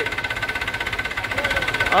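Mahindra 475 DI tractor's three-cylinder diesel engine running steadily with an even, rapid knocking pulse. A man's short call of "haan" comes at the very end.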